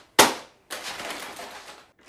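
A single loud plastic clack from a toy foam-dart blaster being handled, followed after a short gap by about a second of softer rustling noise.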